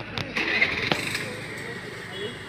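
Distant voices and shouts over outdoor background noise. A few sharp knocks and a short rushing noise come in the first second, the kind a phone microphone picks up when it is swung around.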